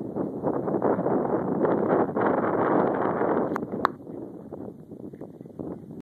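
Wind buffeting a phone's microphone with a heavy rumble, easing off about four seconds in. Two sharp clicks come just before it drops.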